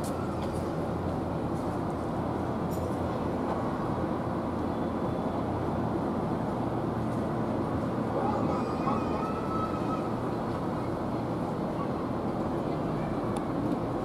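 Steady outdoor city background noise, a low rumble of road traffic, with faint distant voices.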